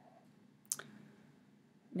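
A single sharp click about two-thirds of a second in, over faint room tone.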